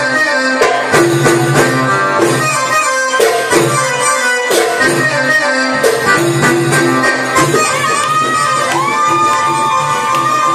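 Live Arabic band playing a baladi: goblet drum and frame drums keep a steady beat while an electronic keyboard plays the melody. From about eight seconds in, the keyboard holds long notes over the drums.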